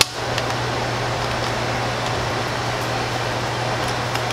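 A steady background hum and hiss, with a sharp click at the very start and a few faint plastic clicks as the pieces of a 2x2 puzzle cube are handled and fitted together.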